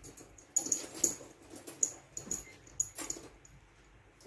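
A dog yelping: about half a dozen short, sharp calls over a few seconds.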